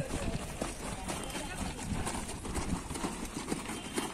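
A squad of cadets' boots striking the ground in drill, a run of short irregular knocks, with indistinct voices behind.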